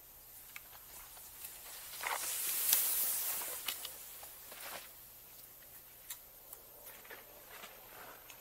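Cross-country skis swishing over packed snow, with short crunches and clicks of ski poles planted in the snow; the hiss swells louder between about two and four and a half seconds in.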